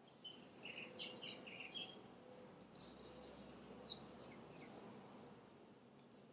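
Small songbirds chirping faintly: a run of short, high chirps in the first two seconds, then scattered chirps, a quick downward-sliding call and a rapid chatter around four seconds in.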